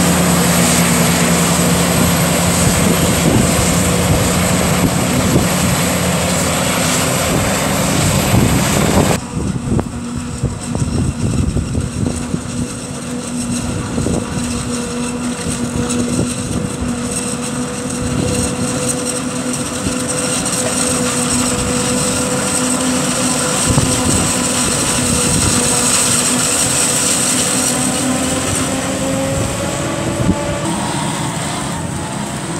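Claas Jaguar 950 forage harvester chopping maize, its engine and cutterhead running steadily with a high whine over dense machine noise. It is loud at first, then drops suddenly about nine seconds in and runs on somewhat quieter, with a tractor pulling a trailer alongside.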